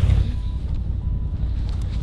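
Wind buffeting the microphone outdoors: a steady, uneven low rumble.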